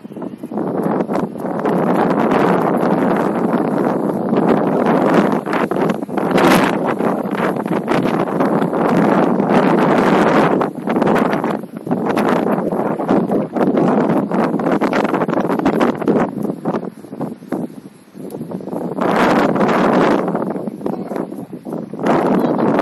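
Wind buffeting the microphone in long, loud gusts, with short lulls about eleven and eighteen seconds in.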